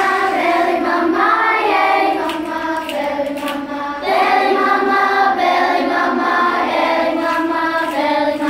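A choir of primary-school children singing together in a steady, full-voiced stream, with a new phrase starting about halfway through.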